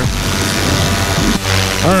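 Parajet Maverick paramotor's two-stroke engine running steadily in flight, a constant drone, with one short click about 1.4 seconds in.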